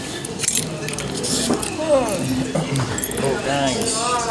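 Light clinks and rustles as a strip of paper scratch tickets is handled, with a voice talking in the background from about halfway through.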